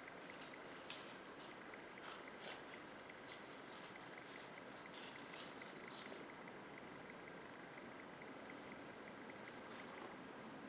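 Faint crackling and rustling of dry leaves and greenery being handled and tucked into a table arrangement, with small clicks clustered in the first six seconds, over a steady low hiss.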